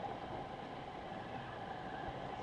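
Steady background noise of the room, a constant hum-like hiss with no distinct event.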